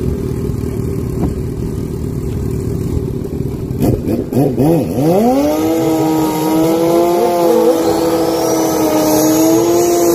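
Drag-racing sport bike engines idling at the start line. About four seconds in, one bike blips its throttle a few times, then holds high, steady revs for a burnout, with a high whine rising near the end.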